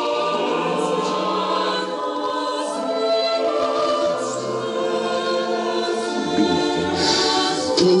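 Background music: a choir singing slow, sustained chords, the notes held and shifting every second or two.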